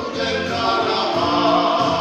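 Two girls singing a Christian hymn as a duet, holding long notes.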